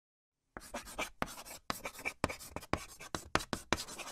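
Chalk writing on a blackboard: a quick, irregular run of short scratching strokes, about four or five a second, starting about half a second in.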